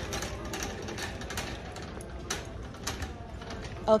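A steady background hum of a large store, with scattered light clicks and rattles.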